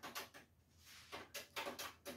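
Faint clicks and knocks of handling: a few in quick succession just after the start and a cluster of them in the second half.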